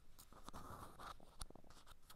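Fingertips and nails lightly scratching and tracing over the surface of a sculpted pot, with a couple of sharp taps. It is picked up close by a tiny microphone lying inside the pot.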